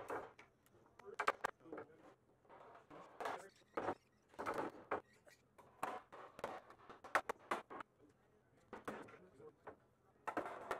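Irregular knocks of mallets, including a dead-blow mallet, striking glued boards to tap the edge joints and dominoes closed during a panel glue-up.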